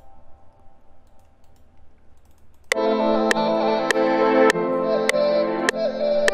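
A few faint mouse and keyboard clicks, then about two and a half seconds in, playback suddenly starts: a sustained orchestral pad chord from the Omnisphere synth plugin, with a sharp tick on each beat, a little under two a second.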